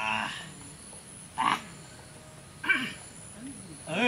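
Short wordless vocal cries from men, one roughly every second and a half, sounding the way men do right after swallowing a strong drink. A steady high insect chirr runs underneath.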